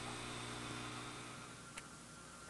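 Faint steady hum and hiss of background noise on an old recording, with one tiny click near the end.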